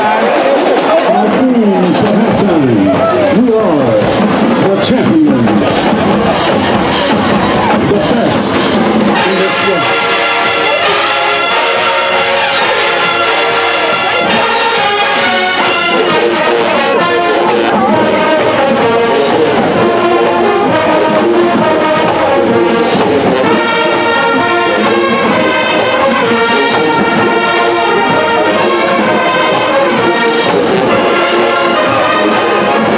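Stadium crowd cheering and shouting, then about nine seconds in a large marching band's brass section comes in playing loud, sustained chords that carry on over the crowd.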